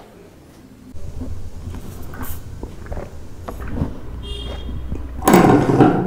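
Energy drink full of soaked seeds being sucked up a long glass drinking straw: a steady low gurgle with small clicks, then a loud slurp near the end.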